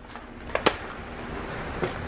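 Plastic blister pack of a brake bleeder kit being grabbed and handled: a few sharp clicks, two close together about half a second in and one near the end, over a steady hiss of room noise.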